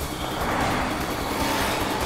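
A car driving past close by, a steady noise of engine and tyres, with faint music underneath.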